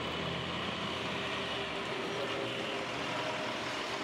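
Steady engine and rolling noise of armoured military vehicles driving past in a convoy.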